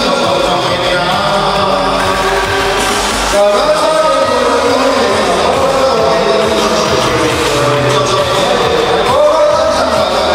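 A man singing into a microphone over amplified backing music, with other voices singing along.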